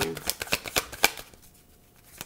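A deck of tarot cards being shuffled by hand: a quick run of light card clicks for about the first second, which then stops.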